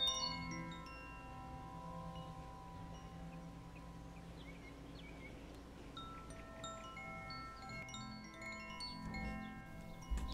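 Faint, soft meditation music of long held chime-like tones over a low steady note, with a few short high bell-like pings near the start and again toward the end.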